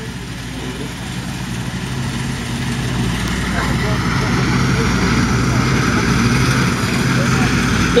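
1991 Sampo-Rosenlew 130 combine harvester running steadily while it cuts and threshes winter barley, its diesel engine and threshing mechanism growing gradually louder as it comes closer.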